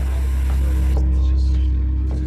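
A loud, steady low-pitched hum with a faint hiss over it that fades about a second in.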